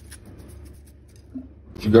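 Seasoning being shaken onto raw pork from a shaker: a quick run of small clicks that stops just after the start. A faint low hum follows, and a short spoken word near the end.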